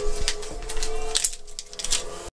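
A string of sharp clicks and light knocks, about half a dozen, over a steady hum that stops a little over a second in.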